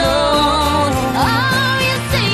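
Upbeat pop song with band backing: a sung note is held, then a vocal line slides upward about a second in.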